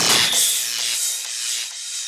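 Outro of a trance track: the kick drum stops right at the start, leaving a hissing, rasping high noise wash with a faint held high tone that fades away.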